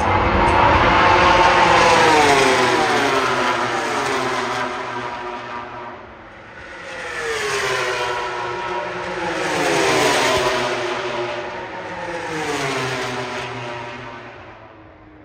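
MotoGP racing motorcycles' four-cylinder engines at high revs as bikes pass along the straight one after another, each engine note falling in pitch as it goes by. The loudest pass comes in the first couple of seconds, and about three more follow, the last fading away.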